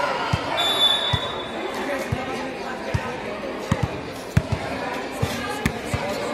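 A basketball being dribbled and bounced on a concrete court, with short thuds roughly once or twice a second and now and then two close together. Players' voices and shouts run underneath.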